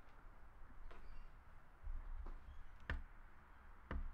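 Footsteps of someone walking into a room: a few sharp knocks and clicks, the loudest about three seconds in, over a low rumble.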